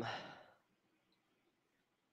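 The end of a long, hesitant "um" from a man, trailing off into a breathy exhale that fades out within about half a second, followed by silence.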